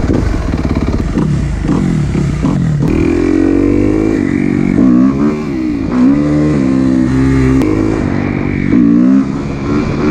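Kawasaki KX250F dirt bike's single-cylinder four-stroke engine pulling away and accelerating. The revs climb and drop back several times as it shifts up through the gears.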